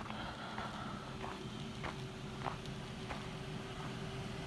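Footsteps of a person walking on a thin layer of snow over a driveway, a steady pace of under two steps a second.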